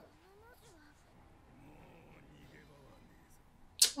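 Very faint subtitled anime dialogue: a character's voice low in the mix, gliding in pitch in the first second, then faint talk. A short sharp hiss just before the end.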